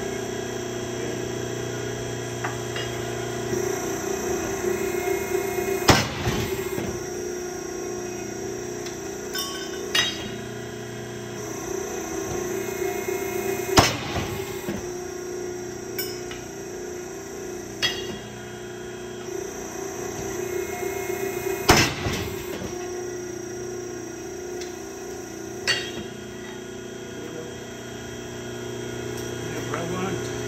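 Edwards 60-ton hydraulic ironworker running, its pump hum swelling as the punch presses into the steel, then a sharp crack as the punch breaks through. This happens three times, about eight seconds apart, each crack followed a few seconds later by a lighter clunk as the stroke ends.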